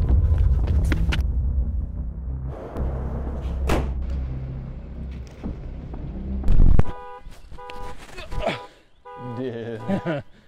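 Film score with a deep, sustained low drone, broken about seven seconds in by a loud thud, then a car alarm beeping in a steady repeating pattern.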